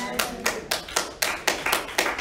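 Hands clapping in a steady rhythm, about four claps a second.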